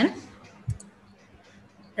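A single short computer click, with a low thump and a couple of faint high ticks, about two-thirds of a second in as the slideshow is advanced. Faint room tone follows.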